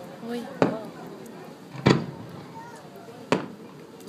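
Three aerial firework shells bursting, each a sharp bang with a short echo, about a second and a quarter apart; the middle one is the loudest.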